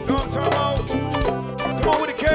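A band playing a song, with a steady drum beat under held chords and a wavering lead line.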